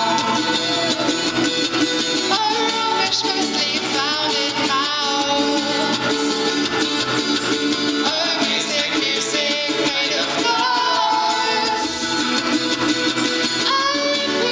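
A live song: several women's voices singing together over instrumental accompaniment.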